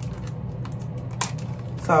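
A small plastic packet being bitten and torn open by hand, giving a few sharp crinkling clicks over a steady low hum.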